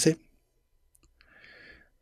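A man's voice at close range into a microphone: a few faint mouth clicks, then a short in-breath in the pause between spoken phrases.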